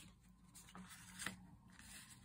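Near silence with faint rustling of paper and card being handled, and a couple of light ticks about halfway through.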